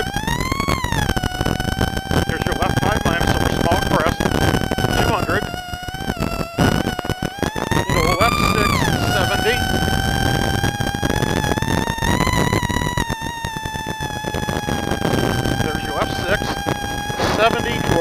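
Rally Plymouth Neon's four-cylinder engine run hard, heard from inside the car: its pitch climbs sharply about a second in and again around eight seconds, drops away briefly near six seconds as the throttle comes off, and otherwise holds a high steady note over constant road noise and rattling knocks.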